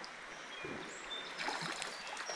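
Shallow creek water running steadily, with a few faint short high chirps.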